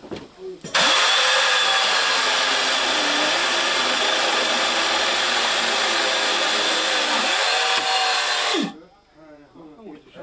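A power tool running at a loud, steady pitch for about eight seconds. It starts suddenly just under a second in and cuts off suddenly, with voices faintly underneath.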